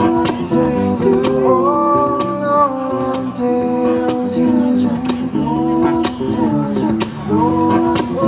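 Acoustic guitar strummed under a man singing long held notes that slide up into new pitches.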